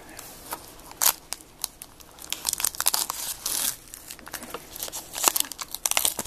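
Foil wrapper of a 2015 Topps WWE Undisputed trading-card pack being torn open and crinkled: a run of sharp crackling rustles that thickens in the middle and again near the end.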